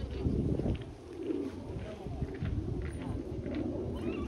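Indistinct distant voices over an uneven low rumble on the microphone.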